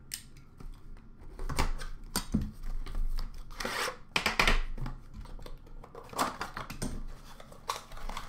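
Handling noise from a boxed metal hockey-card tin being picked up, moved and set down on a counter: irregular rustles, scrapes and a few light knocks, in several separate bursts.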